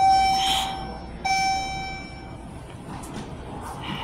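Schindler hydraulic glass elevator's chime ringing twice at the same pitch, about a second and a quarter apart, each ring fading away.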